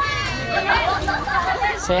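Several people's voices chattering at once, overlapping talk from a small group.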